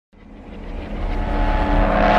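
Intro sound design for an animated logo: a whoosh with sustained synth tones that swells steadily louder out of silence, a rising build.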